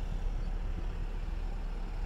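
2016 Toyota Camry SE's four-cylinder engine idling, a steady low hum.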